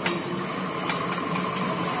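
Steady mechanical hum from an areca nut husking machine, with two faint metallic clicks as its spoked metal rotor is handled, one at the start and one about a second in.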